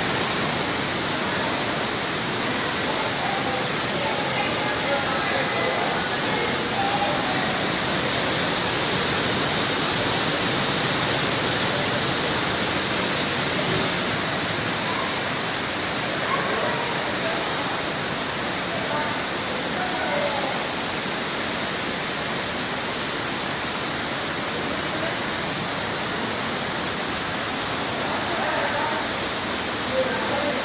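Steady rushing of water, even and unbroken, with faint indistinct voices of people around.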